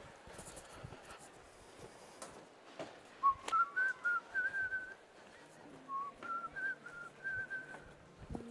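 A person whistling a short tune in two phrases, the first starting about three seconds in and the second about six seconds in, with faint knocks and rustling around it.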